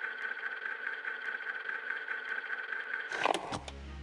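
A steady droning tone with faint ticks. About three seconds in it breaks off and a deep low rumble swells.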